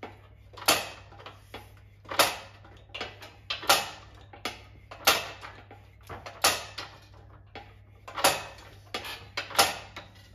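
A floor-standing metal shrinker's jaws clamp down on 25 mm steel angle iron with a sharp metallic clack about every one and a half seconds, seven in all. Lighter clicks come between the strokes as the angle is shifted along. The angle is being shrunk a little at a time to bend it into a curve.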